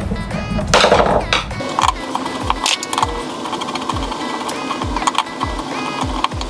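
Background music with a steady beat, a brief loud rasping noise about a second in.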